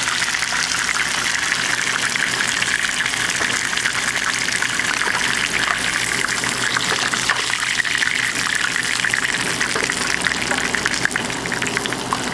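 Chicken pieces frying in hot oil in a skillet: a steady, dense sizzle with fine crackling.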